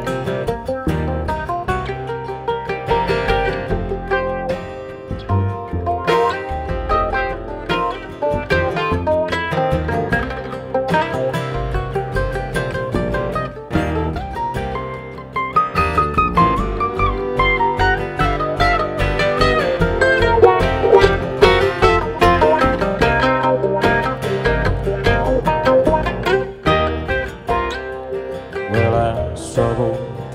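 Acoustic bluegrass band playing an instrumental break live: picked mandolin, two flat-top acoustic guitars, fiddle and upright bass. The mandolin takes the lead through the middle of the break.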